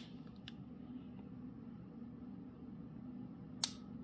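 Springfield XD-S Mod.2 .45 ACP pistol's trigger mechanism in dry fire: a faint click about half a second in, then one sharp, very audible metallic trigger click near the end.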